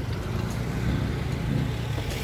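Steady low rumble of a car engine in street traffic.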